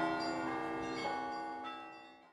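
Church bells ringing, with fresh strikes about a second in and again near the end, and the ringing fading away.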